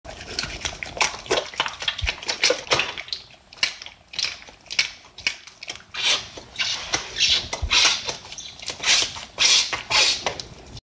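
Soap-lathered hands rubbing, wringing and squeezing together: wet, squishy, sudsy squelches in quick irregular strokes, several a second.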